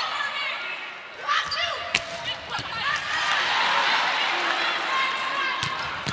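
Volleyball rally: sharp smacks of the ball being struck, clearest about two seconds in and again near the end, over arena crowd noise that swells into cheering from about halfway.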